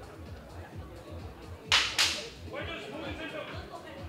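Two short, sharp hissing bursts about a third of a second apart, under halfway through, each cutting in suddenly and fading fast, over background music with a steady beat.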